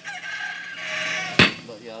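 A hammer strikes red-hot steel laid over a hot cut hardie on the anvil: one sharp ringing blow about one and a half seconds in, part of a steady series of blows about a second apart. Before the blow a rooster crows in the background.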